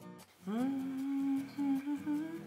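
A woman humming a tune quietly to herself. The hum starts about half a second in with a rising glide, then holds a few steady notes.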